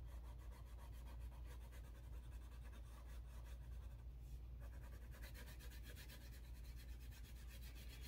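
Faint rubbing of a crayon stroked lightly back and forth over drawing paper, colouring in a drawn face, over a steady low hum.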